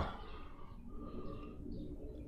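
Quiet room tone in a pause between words, with a few faint, short chirp-like tones.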